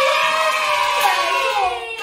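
Children cheering in one long, drawn-out shout, several voices at once, with hand claps, celebrating a right answer.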